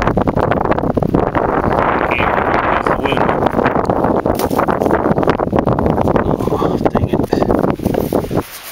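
Wind buffeting the camera's microphone, loud and continuous with irregular gusty thumps.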